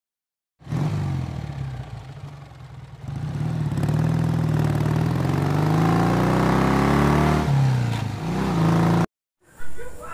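A vehicle engine revving. It starts suddenly about half a second in, climbs in pitch over a couple of seconds, drops sharply, gives one more short rev and cuts off abruptly near the end.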